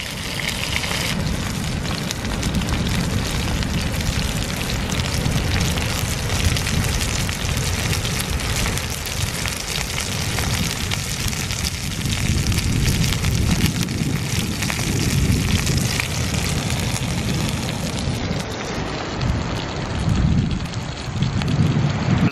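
Fish fingers and eggs sizzling in a frying pan over a wood-burning twig stove, a dense, steady crackle. Near the end the sound turns duller.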